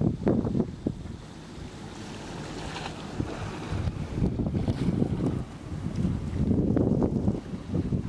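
Wind buffeting the microphone in irregular low gusts, strongest in the first second and again in the last two seconds, with a calmer lull in between.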